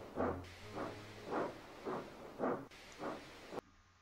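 Steam locomotive chuffing at a steady pace of about two puffs a second over a faint hiss; it cuts off suddenly near the end.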